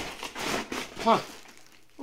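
Plastic bubble-wrap packaging crinkling as it is handled, through about the first second, then stopping.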